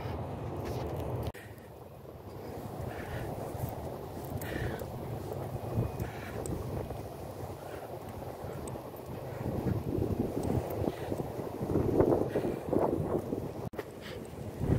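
Wind rumbling on the camera's microphone, with faint footsteps on a concrete path.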